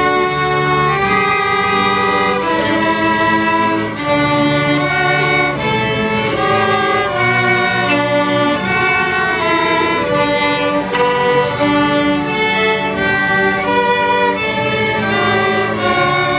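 Violin played right at the instrument, a bowed melody of held notes moving from one pitch to the next, with a second bowed string part sounding lower notes beneath it.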